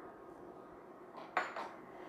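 A glass bowl set down on the counter: one short clink with a little ringing, a bit over a second in, against quiet room tone.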